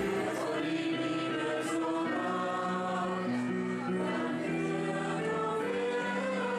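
Mixed choir of men and women singing slowly in harmony, the voices holding long notes and moving together from note to note.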